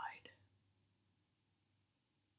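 Near silence: faint room tone after the last spoken word trails off in the first half-second.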